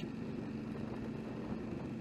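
Suzuki V-Strom 650 motorcycle's V-twin engine running steadily while riding, under an even hiss of wind on the microphone.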